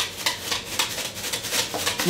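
Garlic salt shaken from a shaker bottle over chopped broccoli: a quick run of short shakes, about four a second.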